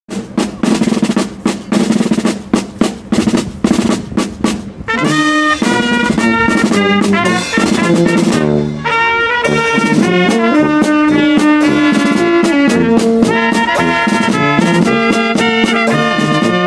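Brass band playing a march-like tune: a drum beats alone for about the first five seconds, then trumpets come in with the melody over the tuba's bass notes.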